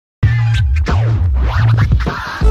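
Record scratching in a short intro jingle: quick swoops up and down in pitch over a low bass tone that comes and goes, starting suddenly a moment in.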